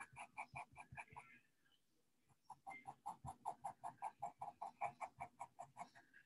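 White pencil stroking quickly back and forth on toned sketchbook paper, a faint scratching of short strokes about six a second, pausing for about a second early on before resuming.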